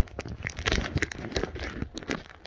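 Handling noise from a phone turned in the hand: irregular rustling and crackling on the microphone, with a sharp knock at the start and scattered clicks.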